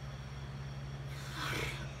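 A pause in talk over a steady low background hum, with a short hissing in-breath about a second and a half in, just before speech resumes.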